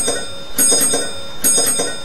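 A bell struck twice, about a second apart, each strike leaving a high ringing tone.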